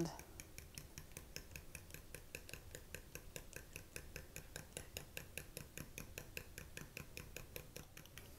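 Metal spoon clinking faintly against a small glass bowl while stirring mayonnaise and egg together, a quick steady run of about seven light clicks a second.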